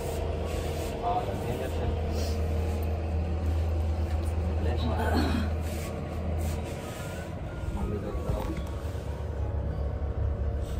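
Faint voices over a steady low hum, with a short falling vocal sound about five seconds in.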